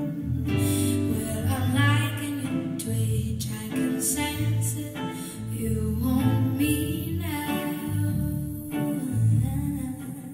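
A female vocalist sings a slow, soulful song live in phrases, backed by a band with guitar and a prominent bass line.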